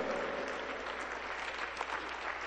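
A congregation applauding: many hands clapping together in a steady, even patter, fairly faint.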